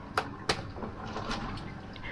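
Handling noise from a plastic bag and a vinyl hose: crinkling, with two sharp clicks in the first half-second and a few fainter ticks after.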